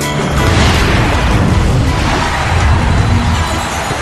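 TV channel intro sound design: music under a deep boom and a long rushing whoosh. The pitched notes of the music fade back behind the noise.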